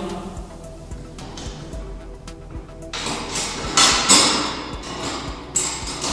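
Background music, with knocks and clattering from a York Fitness adjustable weight bench as its metal backrest is lifted and set to full incline, loudest a little past halfway.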